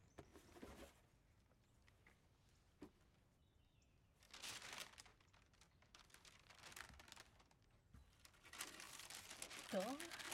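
Faint rustling and crinkling in three short spells as a dress box is handled, passed over and opened.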